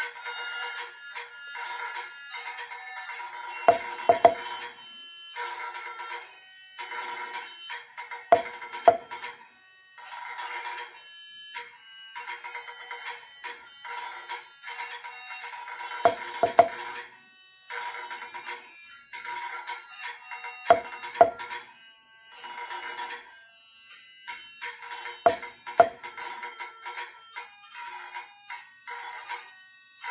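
Wooden drumsticks striking a rubber practice pad along with a played-back pipe tune of thin, steady melody tones. Pairs of louder accented strikes about half a second apart stand out five times, roughly every four to five seconds.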